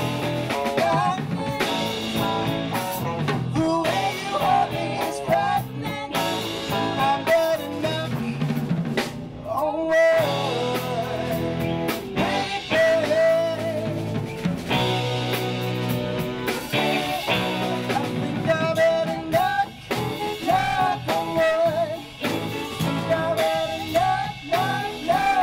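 A live band playing a bluesy number: a saxophone section over electric guitars and a drum kit.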